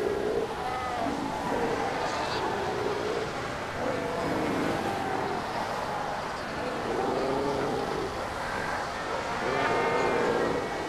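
A dense Cape fur seal colony calling: many overlapping, wavering calls from numerous seals blend into a continuous din.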